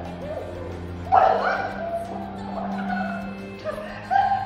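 Film soundtrack: a low, steady music drone under several short, shouted cries from actors, the loudest about a second in.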